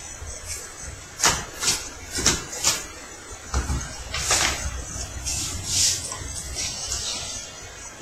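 Trading cards and a deck box being handled on a playmat: a string of short taps and clicks in the first three seconds, then softer swishing as a deck is shuffled.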